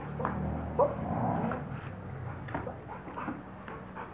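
A Rottweiler giving a few short, separate yelps and whines, eager for a tug toy held up above it.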